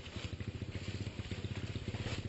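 A motorbike engine idling with a fast, even putter.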